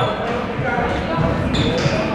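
Basketball being dribbled on a gym's hardwood floor, a series of low thumps, with spectators talking.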